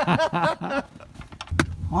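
Men laughing, then a sharp click about a second and a half in, after which a steady low engine hum starts, heard from inside a Dodge Ram pickup's cab.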